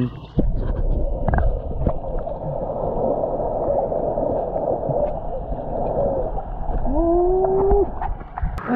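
Muffled underwater sound of a camera submerged in a shallow tank: a steady dull water noise with scattered small clicks and bubbling. Near the end a short muffled voice rises in pitch and holds.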